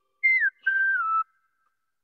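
Two whistle-like tones falling in pitch, a short higher one and then a longer lower one that gently slides down.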